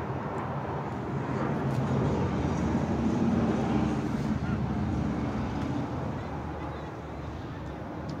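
A motor vehicle passing on the street, its noise swelling to a peak about three seconds in and then fading away.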